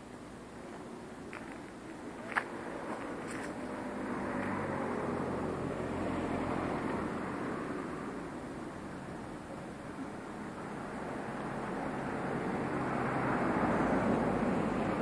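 Road traffic going by on the street, the noise swelling as vehicles pass around the middle and again near the end. A short sharp click about two seconds in.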